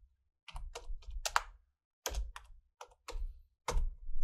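Computer keyboard typing: a series of separate keystrokes in uneven clusters, each a sharp click with a low thump beneath.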